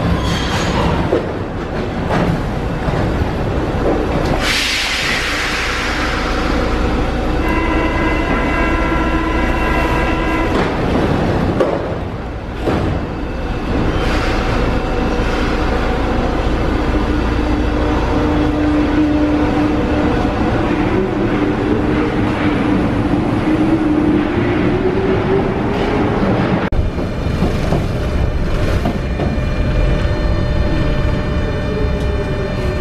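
Paris Metro MF77 train standing at a station platform: a hiss of air about four seconds in, a steady tone lasting about three seconds like the door-closing warning, then a whine rising slowly in pitch as the train pulls out. Near the end the sound changes to the rumble of riding inside a carriage.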